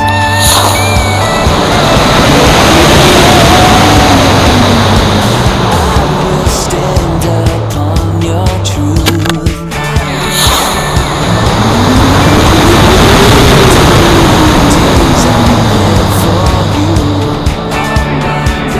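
Model rocket onboard-camera audio of two launches, each beginning with a sudden rush at lift-off and then a loud rushing roar of motor and airflow, with a whistle that rises and falls in pitch, fading after about eight seconds. Background music with a steady bass beat plays underneath.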